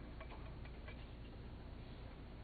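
Faint, irregular small clicks and ticks over quiet room noise in a pause between spoken phrases.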